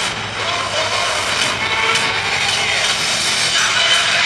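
Pregame intro soundtrack played loud over the arena PA: music mixed with a dense, rushing sound effect.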